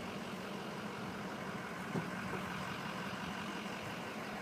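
A steady low hum, like an engine idling, with a single light knock about two seconds in.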